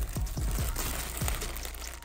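A plastic bag of router bits rustling as it is pulled out of a zippered soft tool case. Under it, background music with repeated deep bass notes that drop in pitch.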